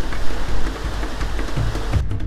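Steady rushing noise of the Petrohué waterfall pouring through a narrow rock gorge, dropping a little under a second in. Background music comes in near the end.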